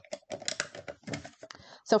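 Irregular plastic clicks and rattles from a paper trimmer's blade cartridge being worked off the rail while the straight blade is swapped for a wave decorative blade.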